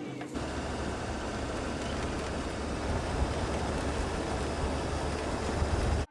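Steady wind and road noise from a moving vehicle, with a deep rumble. It follows a brief moment of crowd chatter at the start, and the noise cuts off abruptly at the end.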